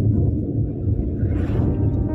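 Steady low engine and road rumble inside the cabin of a Maruti Suzuki Alto 800 driving at speed, its three-cylinder petrol engine pulling in fourth gear. A brief rushing noise rises and falls about one and a half seconds in.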